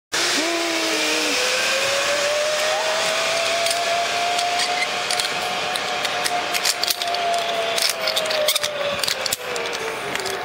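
Zip-line trolley pulleys running along a steel cable: a steady whirring hiss with a whine that rises in pitch as the rider picks up speed, holds, and sinks again near the end, with scattered clicks in the last few seconds.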